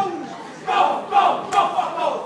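Group of boys shouting the chant of a Samoan haka war dance together. One shout comes at the start, then a quick run of loud shouted calls from about halfway through.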